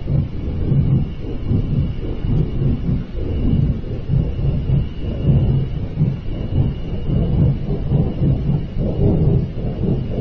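A loud, continuous low rumbling noise with no clear source, swelling and fading, that sounds like a giant flame. A faint steady high tone runs above it.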